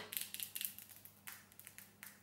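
Faint clicking and rubbing of long acrylic nails and fingertips against each other and the face, a quick run of small clicks in the first second or so, then a few scattered ones.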